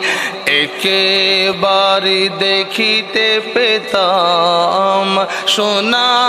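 A man's solo voice singing a Bengali Islamic devotional song (gojol), drawing out long, wavering notes that move from pitch to pitch.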